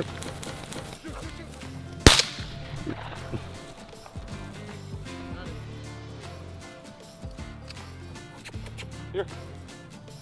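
A single shotgun shot about two seconds in, sharp and loud with a short echo after it.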